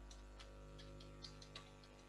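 Faint, irregular clicking of computer keys, several clicks a second, over a low steady hum.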